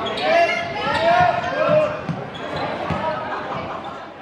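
Youth korfball game in play in a sports hall: thumps of the ball and footfalls on the court, with loud shouted calls echoing in the hall, the calls heaviest in the first two and a half seconds.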